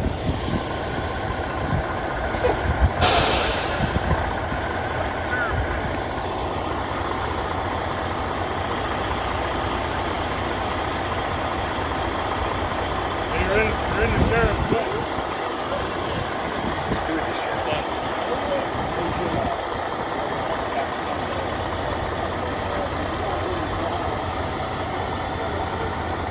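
Semi tractor-trailer's diesel engine running at close range with a steady low rumble, swelling louder around the middle. A loud hiss about three seconds in.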